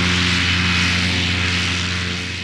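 Light propeller aircraft's piston engine droning steadily, with a broad rush of wind and airframe noise over it, easing off slightly near the end.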